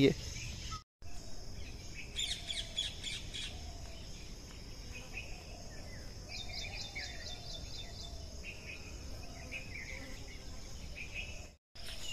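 Faint outdoor ambience of birds chirping in short quick runs over a steady high insect buzz. The sound drops out briefly about a second in and again near the end.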